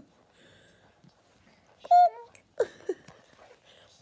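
A baby's short, high-pitched coo about halfway through, then two hollow mouth pops made by pulling a finger out of a cheek, about a third of a second apart.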